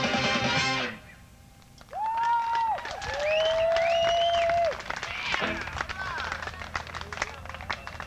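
A funk band's final chord cuts off about a second in. After a short lull come long whistles with gliding ends, two at once, followed by scattered clapping and crowd noise.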